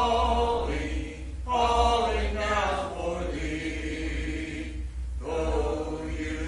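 Congregation singing a hymn a cappella, many unaccompanied voices holding long notes, with short breaks between phrases about a second and a half in and about five seconds in, over a steady low hum.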